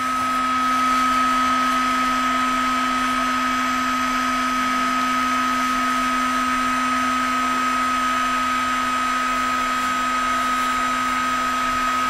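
Electric paint heat gun running steadily: an even fan-and-motor whir with a low hum and a thin higher whine held at constant pitch.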